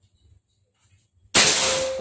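A Benjamin Marauder PCP air rifle fires a single shot about 1.3 seconds in: one sudden loud report that trails off over about half a second.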